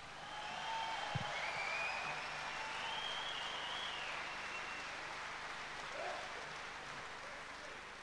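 Large outdoor crowd applauding, swelling over the first second or two and slowly dying away, with a few faint calls over the clapping.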